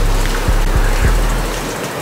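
Background music: a deep, sustained bass note with a few kick-drum hits, fading out near the end.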